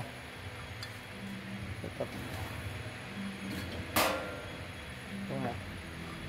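A glass bottle clinks once, sharp and ringing, about four seconds in as empty bottles are set onto the steel filling nozzles, over a low steady hum.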